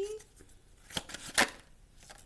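Oracle cards being handled: two sharp card snaps about a second in, the second one louder.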